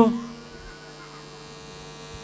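Steady electrical mains hum from an amplified microphone sound system, heard as a low, even drone. A man's amplified voice trails off in the first moment.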